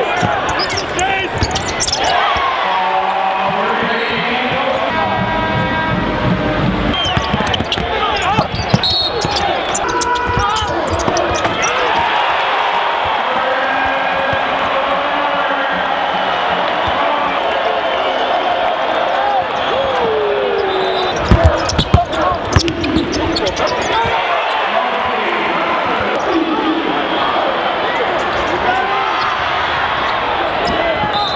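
Basketball game in a full arena: steady crowd noise and voices, with a ball being dribbled on the hardwood court. A few sharp bangs stand out about two-thirds of the way through.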